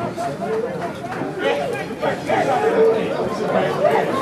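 Indistinct overlapping men's voices: spectators and players chattering and calling out.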